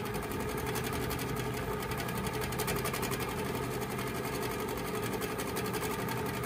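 Handi Quilter Capri stationary longarm quilting machine stitching steadily in manual mode, its needle running at a constant speed with a rapid, even rhythm of strokes. The running sound is really nice and quiet.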